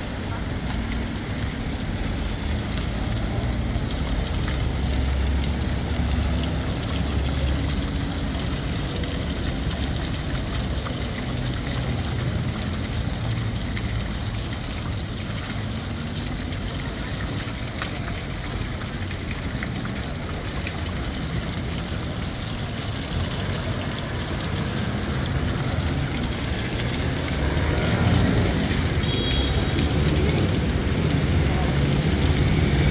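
Night-time traffic ambience of a busy city square: a steady rumble of cars and buses that swells as vehicles pass, mixed with the splash of a fountain's water jet falling into its stone basin.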